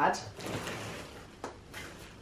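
A low chest-of-drawers drawer, overstuffed and hard to open, being pulled out with a rustle and scrape of its packed contents and a few light knocks.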